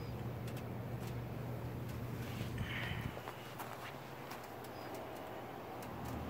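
Quiet outdoor background with a steady low hum and a few faint clicks.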